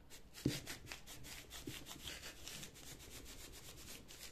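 Electric iron sliding back and forth over layered newspaper: a faint, papery rubbing in quick repeated strokes, with a light knock about half a second in. The iron is pressing out the wax from a batik sample into the newspaper.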